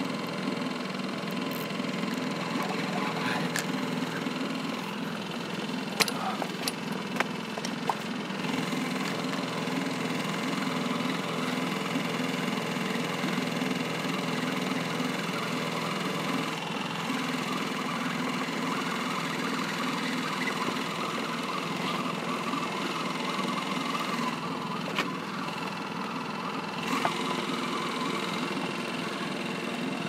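Small outboard motor running steadily as the boat moves along trolling. A few sharp light clicks come about six to eight seconds in.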